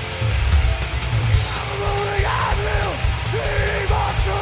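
Live heavy metal played loud by a full band: distorted electric guitar, bass and drums. From about halfway through, a pitched line repeatedly bends up and down over the rhythm.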